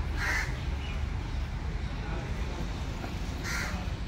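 A bird calling outdoors, two short harsh calls: one just after the start and one near the end, over a steady low rumble.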